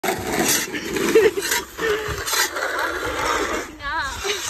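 Plastic snow shovel scraping and pushing over an icy concrete driveway in repeated strokes, with people laughing and making wordless vocal sounds.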